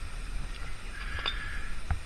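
A cam-latch tie-down strap being unhooked and handled: a few light clicks spread over about two seconds, above a low rumble.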